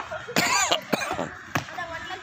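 Children hop-drilling onto concrete blocks: two sharp footfall knocks about a second and a second and a half in, after a short voice burst like a cough or exclamation, with children's voices in the background.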